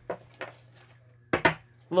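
Tarot cards being handled as a card is drawn from the deck: a couple of light clicks, over a low steady hum. A short vocal sound comes about a second and a half in, and speech starts at the very end.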